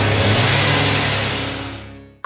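A sudden loud burst of noise that fades away over about two seconds, over a low held note, closing out the intro music.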